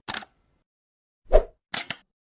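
Sound effects of an animated channel-logo intro: short separate hits in silence, a brief one at the start, the loudest about a second and a half in, and a quick double one near the end.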